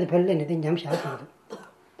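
A man's voice speaking Tibetan in a lecture, breaking off about a second and a quarter in, followed by one brief short sound.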